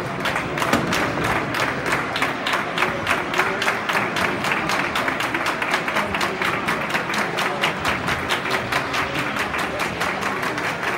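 Spectators clapping fast and steadily in rhythm, about five claps a second, with crowd chatter underneath.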